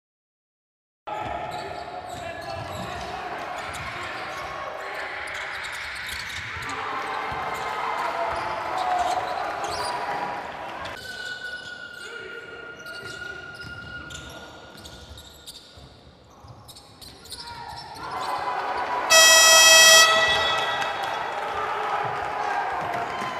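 Live basketball game sound in a large hall: a ball dribbling on the court amid crowd noise, starting about a second in. Near the end a loud horn sounds for about a second.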